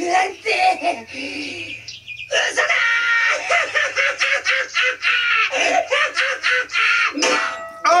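Dubbed-anime voice acting played back: a cartoon character's voice speaking in Japanese, then a long, loud, high-pitched shout of alarm about pirates coming, over background music.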